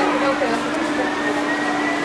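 Underground train at the platform, giving a steady low hum and a high steady whine; the hum stops near the end while the whine carries on.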